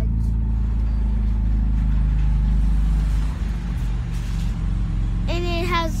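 First-generation Mazda RX-7's engine running at low speed, heard from inside the cabin as the car creeps along. About three seconds in it settles slightly quieter and rougher.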